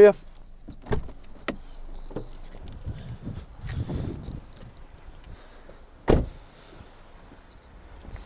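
Someone climbing out of a SEAT Ibiza hatchback: a few knocks and clicks and rustling as they get out, then the car door is shut with a single loud thud about six seconds in.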